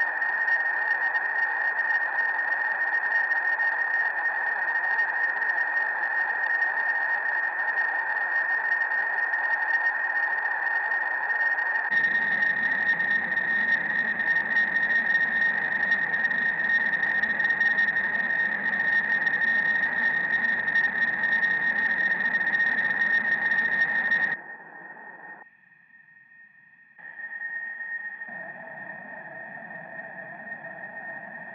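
Electric guitar noise made by rubbing the strings against the amplifier and running the signal through effects pedals: a steady high tone over a dense noisy wash, joined by a low rumble about twelve seconds in. It cuts off abruptly late on, falls almost silent for a moment, then returns softer with a lower tone near the end.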